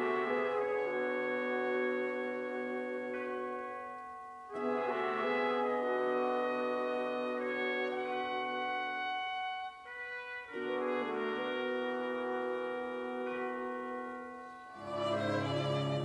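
Orchestral film-score music: a run of held chords in phrases of several seconds each, every phrase fading briefly before the next comes in, with a lower-pitched passage entering near the end.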